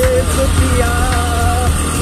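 A background song with a held vocal melody over the low, steady rumble of a motorcycle engine on a rough dirt track.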